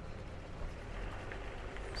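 Quiet outdoor background noise: a steady low rumble with no distinct events.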